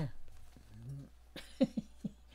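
An elderly woman coughing: a few short, sharp coughs in quick succession in the second half, the first the loudest.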